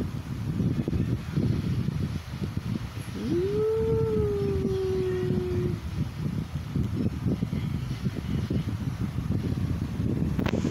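A puppy gives one long howl about three seconds in, sweeping up quickly and then held, sagging slightly in pitch, for about two and a half seconds. A steady low rumble on the microphone runs underneath.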